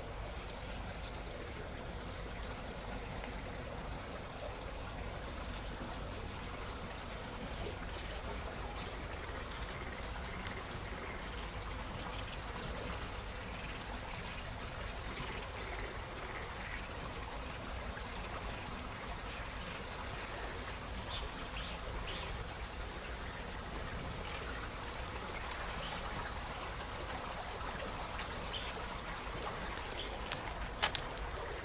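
Steady rushing outdoor ambience over the pond, heard as trickling or running water, with a few faint high chirps in the middle.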